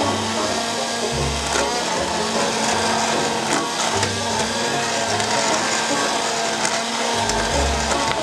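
Hand-held immersion blender running in a pot of broth soup, starting abruptly and then running steadily with a motor hum and churning liquid as it purées the soup.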